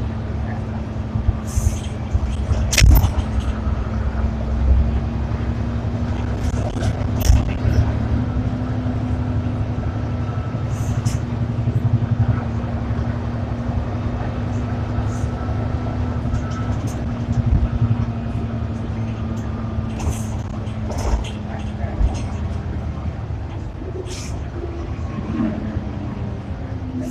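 Cabin sound of an Ikarus 435 articulated bus: the diesel engine runs with a steady low drone and a constant hum. Short knocks and rattles are scattered through it.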